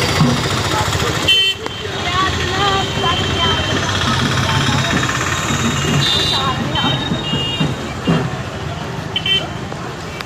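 Busy street crowd noise: people's voices chattering over motor traffic, with several short vehicle-horn toots.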